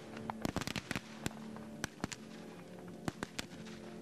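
Scattered gunfire from black-powder rifles firing blanks in a mock battle. A quick ragged cluster of shots comes about half a second in, followed by single shots spaced a second or so apart.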